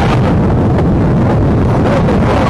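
Loud wind rumble buffeting the microphone, a steady low noise with no clear events.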